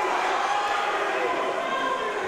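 Crowd in a fight hall shouting and cheering steadily, a dense wash of many voices, reacting to an inverted triangle submission attempt.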